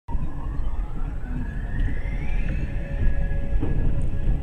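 Steady low rumble of a car driving slowly through floodwater over a pontoon bridge, picked up by a dashcam inside the cabin. A faint tone rises in pitch over the first two and a half seconds, and a knock comes near the end.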